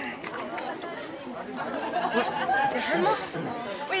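Chatter of a crowd of people talking over one another, several voices at once, getting a little louder in the second half.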